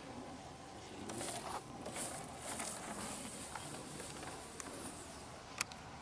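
Faint rustling swishes as a 3D-printed RC electric ducted-fan jet model touches down without landing gear and slides on its belly across grass, then a single sharp click near the end.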